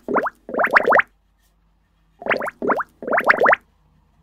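Cartoon 'bloop' sound effects: short bursts of quick upward pitch glides, a pair near the start and another pair a little after two seconds in.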